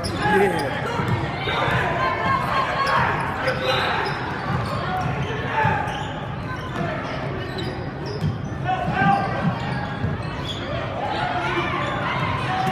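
Basketball bouncing on a hardwood gym floor during a game, with spectators' and players' voices and shouts echoing in a large gym hall.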